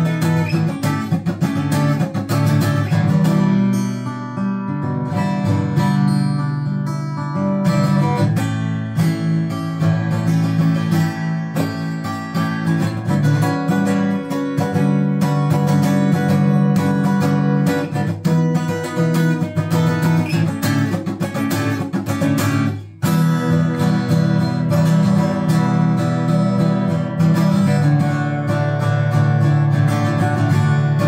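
LAVA ME acoustic guitar strummed in a steady chord pattern, an instrumental passage, with a brief break about three-quarters of the way through.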